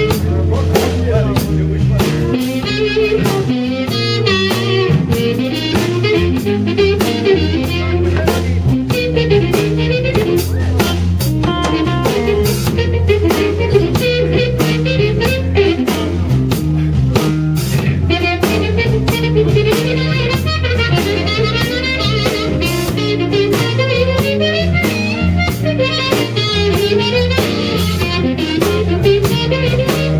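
Live blues band: amplified blues harmonica played into a handheld microphone, with bending, wailing notes over electric guitar, bass and a drum kit keeping a steady beat.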